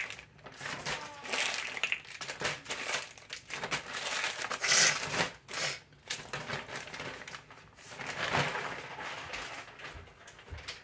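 A bag and packaging wrappers crinkling and rustling in irregular bursts as items are handled and packed into the bag.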